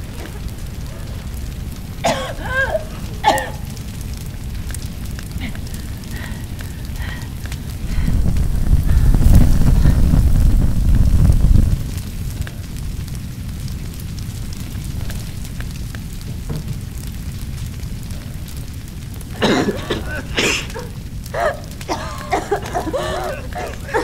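Flames of a large fire roaring and crackling, rising to a loud low rumble for a few seconds midway. Short bursts of a woman's sobbing come about two seconds in and again near the end.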